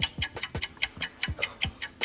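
A rapid ticking sound effect, about five sharp ticks a second, each with a low thud beneath it.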